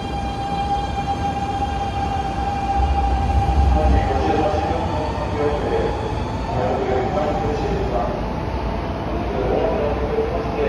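Keikyu 1000-series train (set 1033) pulling away with its Siemens GTO-VVVF inverter whining on one steady pitch for the first couple of seconds, then fading under the rumble of the train accelerating out of the station.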